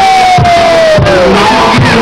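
Loud dance music with a steady beat, with a crowd shouting over it. One long, high yell slides slowly down in pitch and stops a little over a second in.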